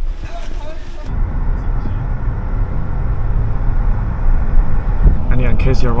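Steady low road and engine rumble heard inside a car's cabin while it drives along a highway, after about a second of brighter, hissier noise at the start.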